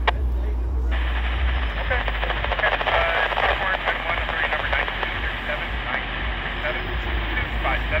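A railway radio scanner keys up about a second in, and a hiss of open-channel static with faint garbled voice runs on until the next transmission starts. Under it is the low rumble of GO Transit bi-level coaches rolling past.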